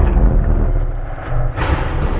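Cinematic logo-reveal sound effect: a deep low rumble, with a swelling whoosh about one and a half seconds in.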